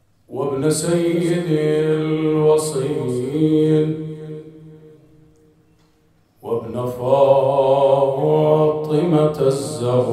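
A man chanting an Arabic mourning recitation into a microphone, holding long, drawn-out notes. There are two phrases: the first fades out about five seconds in, and the second starts about a second later.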